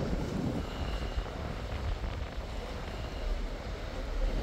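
Strong wind buffeting the microphone: an uneven low rumble.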